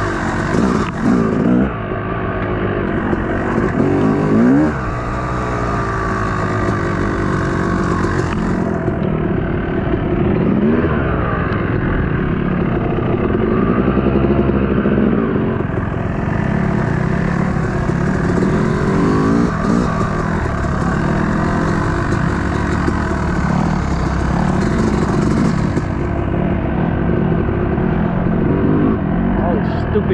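Dirt bike engine revving up and down while riding, its pitch rising and falling again and again as the throttle opens and closes.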